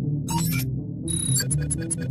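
Synthesized interface sound effects over a steady low electronic hum: short high-pitched digital beeps, a few about a third of a second in, then a quick run of beeps in the second half.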